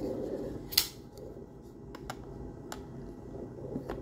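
Folding knives being handled and set down on a mat: one sharp click a little under a second in and a few fainter clicks and taps after it, over a low steady background rumble.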